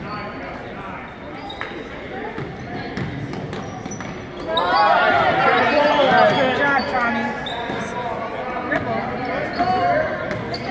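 A basketball bouncing on a hardwood gym floor, with many voices echoing in the hall. About halfway through, several voices call out together, the loudest stretch.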